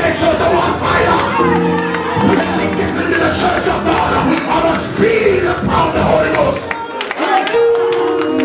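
Congregation shouting and praising in worship, many voices overlapping, with held keyboard chords sounding about a second and a half in and again near the end.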